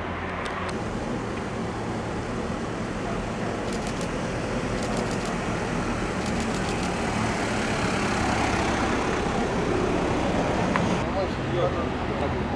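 Street traffic noise, a steady rush of passing cars that swells slowly and drops away near the end.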